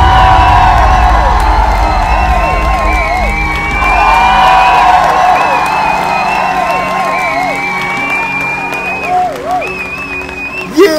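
Background music with a heavy, steady bass and a wavering, gliding melody line above it, fading somewhat near the end.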